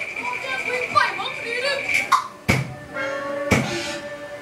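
Taiwanese opera performance: a performer's voice over a steady high held note, then two sharp percussion strikes about a second apart, followed by sustained instrumental notes.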